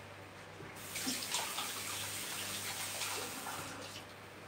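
Kitchen tap running into the sink for about three seconds: a steady rush of water that starts just under a second in and is turned off near the end.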